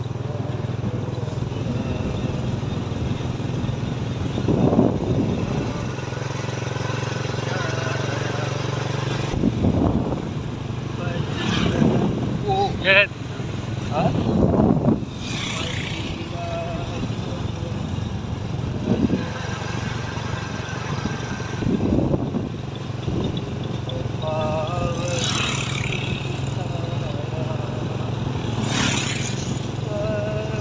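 A vehicle's engine running steadily under way, with road and wind noise and a few louder rough bursts, and voices now and then.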